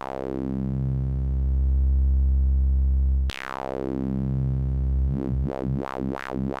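Modular synthesizer sawtooth note played through the bandpass output of a Q107a state variable filter, the bright band sweeping down from high to low. The note restarts about three seconds in with another downward sweep. Near the end the band swings rapidly up and down several times, a wah-wah.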